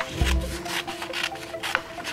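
Blunt-tip school scissors snipping through colored paper in a quick series of short cuts.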